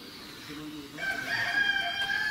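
A rooster crowing: one long, steady call that starts about a second in.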